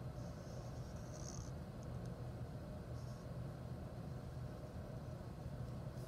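Black Sharpie felt-tip marker drawn across paper: one faint scratchy stroke lasting just over a second, then a brief second stroke about three seconds in, over a low steady hum.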